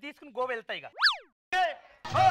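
A cartoon-style comedy sound effect about a second in: a short whistle-like tone that shoots up in pitch and slides back down. It comes between bits of speech.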